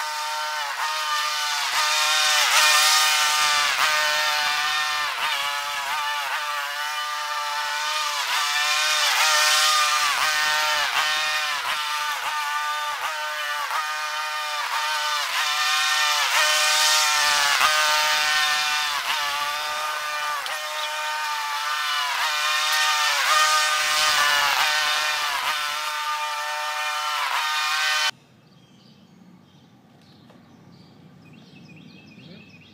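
A small engine running, its pitch dipping and recovering over and over; it cuts off abruptly near the end.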